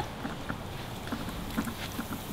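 Hot oil sizzling in a skillet of popcorn, a steady hiss with faint scattered crackles.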